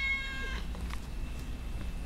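Tabby cat giving one short meow that ends about half a second in, followed by a steady low hum and a few faint clicks.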